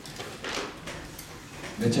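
A pause in a man's talk, with a brief soft swish about half a second in; he starts speaking again near the end.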